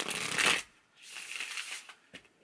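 A tarot deck being shuffled by hand: two quick bursts of cards riffling against each other, about a second apart.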